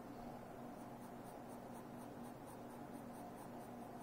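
Pencil lead scratching faintly on sketch-pad paper in short, repeated strokes as a curved line is drawn.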